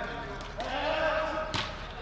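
A football kicked once, a sharp thud about one and a half seconds in, while a player shouts across the pitch just before it.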